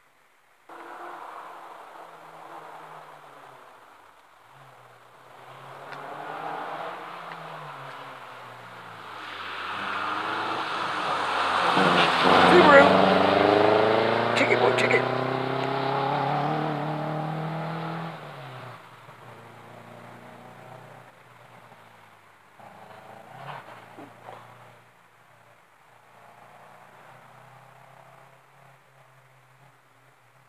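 Rally car engine approaching at full throttle through several gear changes, loudest as it passes about halfway through with its pitch dropping, then fading into the distance.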